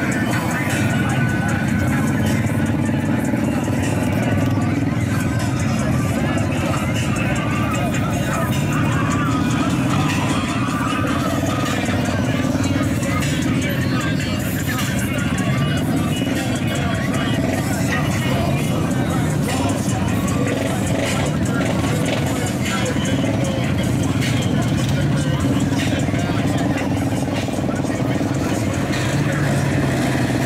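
Slow-moving UTV side-by-sides and a dirt bike running past, mixed with music and voices.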